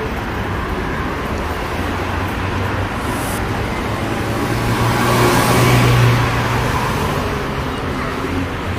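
Road traffic on a busy multi-lane city street, with one vehicle passing close and loudest about five to six seconds in before fading.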